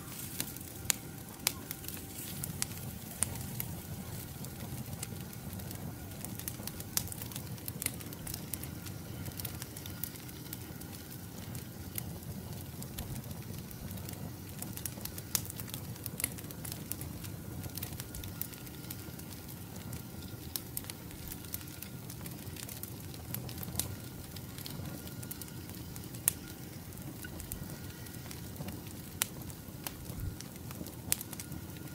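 Wood log fire burning in a fire pit: a steady low rush of flame with frequent sharp pops and crackles from the burning logs.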